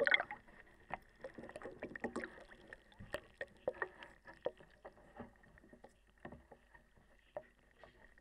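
Water sloshing and splashing in a tank as hands pull apart a soaked paperboard burger box underwater, with irregular small knocks and clicks.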